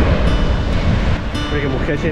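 Surf breaking and washing up a sandy beach, with wind rumbling on the microphone.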